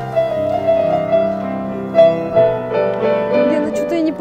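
Piano accompaniment for ballet barre exercises, a melody of held notes over a lower line.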